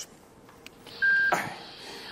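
A patient monitor in an operating room gives a single short, steady electronic beep about a second in, over a faint hiss of room noise. A man's brief exclamation follows the beep.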